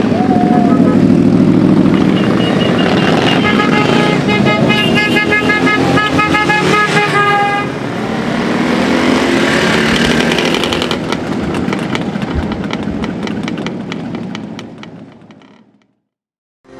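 Motorcycles riding past one after another, their engines rising and falling in pitch as they go by, with a horn blowing in repeated toots from about two to seven seconds in. The sound fades away over the last few seconds.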